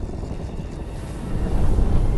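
Film sound effects of a volcanic eruption: a deep, continuous rumble that dips and then swells louder about one and a half seconds in.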